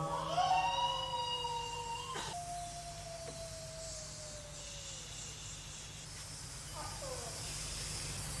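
A faint, long wailing tone that slides upward, holds, then sags slowly lower and fades out about five seconds in, right after loud chanting breaks off; a short falling slide follows near the end.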